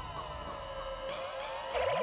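Trippy cartoon sound effect for a hallucination: a held high tone with pitches sliding up and down around it. Near the end a fast warbling wobble comes in, with a low pitch that swoops up and back down as the picture goes wavy.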